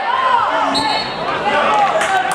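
Several voices shouting and calling over one another on a football pitch, with a brief thin high tone about a second in.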